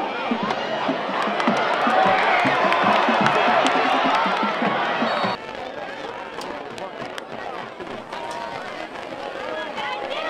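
Stadium crowd cheering and yelling, swelling loudest through the middle of a run play. An abrupt cut about five seconds in drops it to quieter crowd noise with scattered voices.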